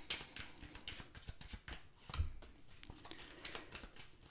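A tarot deck being handled and shuffled in the hands: a run of faint, quick card clicks and slaps, with a louder soft thump about two seconds in.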